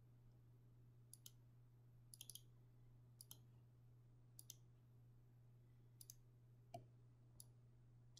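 Near silence with faint computer mouse clicks, several in quick pairs like double-clicks, over a low steady hum.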